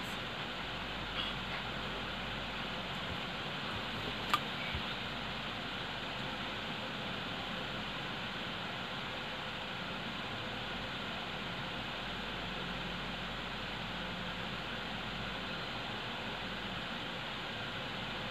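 Electric stand fan running with a steady whooshing hiss, and one short click about four seconds in.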